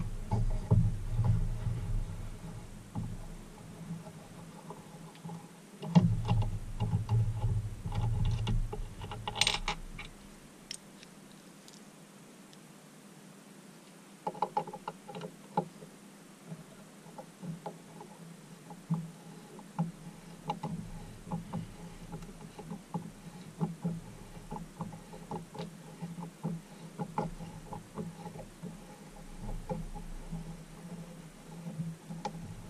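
Steel tap wrench and tap being handled at a bench vise: small irregular metallic clicks and clinks as the tap is fitted and the wrench set on the copper bar, with dull bumps and handling rumble in the first ten seconds.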